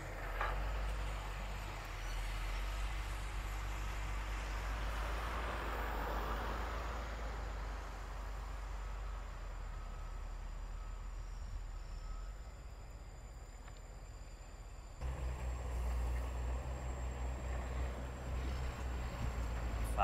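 Caterpillar motor grader's diesel engine running steadily as the machine works the soil, a low continuous rumble that turns suddenly louder about fifteen seconds in.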